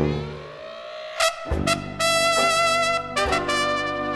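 Small jazz ensemble recording: a chord rings out and fades, then trumpet and trombone come in with held notes over a walking bass line, the loudest held note starting about two seconds in.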